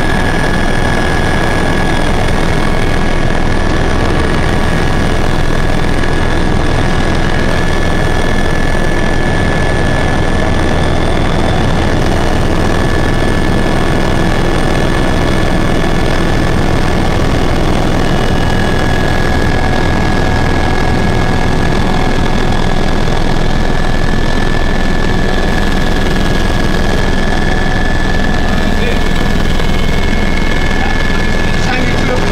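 Helicopter cabin noise in steady flight: engine and rotor running loud and unchanging, with a steady high whine over the rumble.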